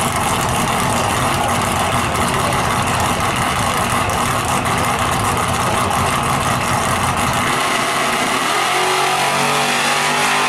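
A drag-race car's engine running loud and rough at the starting line. Near the end it launches, and its note climbs as it pulls away down the strip.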